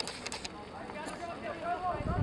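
Distant voices calling out across the soccer field, players or spectators shouting, starting about a second in. A quick run of sharp clicks at the very start.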